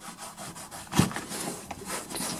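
A metal M1 Garand en-bloc clip scraping and rubbing against canvas webbing as it is pushed down into a cartridge-belt pouch, with one sharp scrape about a second in.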